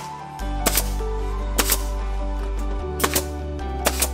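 Nail gun firing four single shots about a second apart, driving nails through shiplap boards into the wall, over background music with a steady bass.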